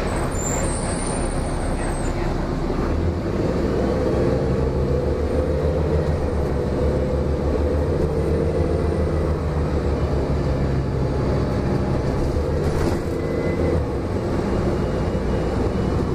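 Inside a 2004 Gillig Low Floor transit bus under way: steady engine drone and road rumble, the engine note strengthening about three seconds in and holding steady.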